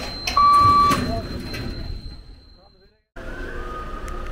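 A loud electronic beep of one steady high pitch sounds once for about half a second shortly after the start, over the murmur of people's voices. The sound then fades out and cuts off about three seconds in, followed by a faint steady high tone.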